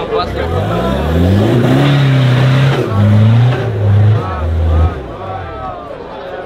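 Diesel engine of a Nissan Patrol 4x4 revving hard under heavy load as it climbs a steep dirt trench. The pitch rises over the first two seconds, is held and pulsed up and down several times, then drops away about five seconds in. Crowd voices shout over it.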